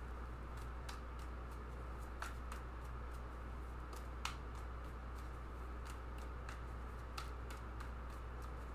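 A deck of tarot cards being shuffled by hand: soft, irregular clicks and flicks of the cards sliding against each other, over a low steady hum.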